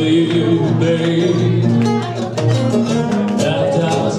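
Live band music: strummed acoustic guitars with a male singer on a microphone, played loud in a small club.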